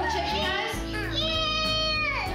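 A young child's high voice in a wordless drawn-out call: a sliding sound in the first second, then one long high note held for most of a second that falls away at the end, over background music.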